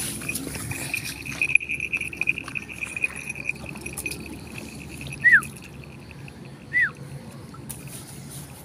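Two short, falling whistled calls, a second and a half apart, over a steady pulsing high trill in the first few seconds. Rustling and snapping of brush underneath.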